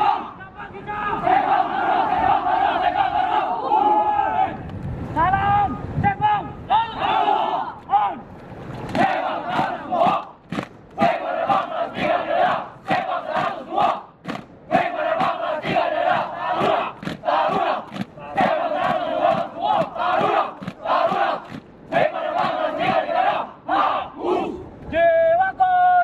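A squad of military cadets shouting a rhythmic group chant (yel-yel) in unison, loud and forceful. From about a third of the way in, sharp hits keep time at roughly two a second under the voices.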